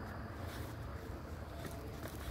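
Wind noise on the microphone: a steady low rumble with no distinct events.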